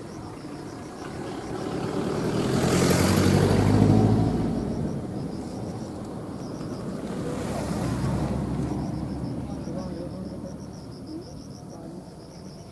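A motor vehicle's engine rising to a peak about four seconds in and fading away, then swelling again more faintly near eight seconds. A high, fast-pulsing chirp runs underneath.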